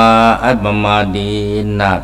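Buddhist monk chanting Pali precepts through a microphone, one male voice drawing each syllable out into long held notes: a short one that breaks off about half a second in, then a held note of over a second.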